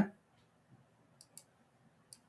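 Two faint computer mouse clicks about a second in, a fifth of a second apart.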